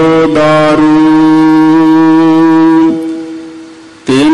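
Harmonium accompanying Sikh kirtan, holding one long steady note between sung lines, then fading away over the last second.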